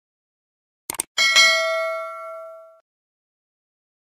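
A couple of quick clicks, then a bright bell-like ding that rings out and fades away over about a second and a half.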